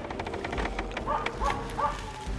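A Finnish spitz barking, three short barks in quick succession about a second in: the bark a spitz gives to mark a grouse in a tree for the hunters to stalk.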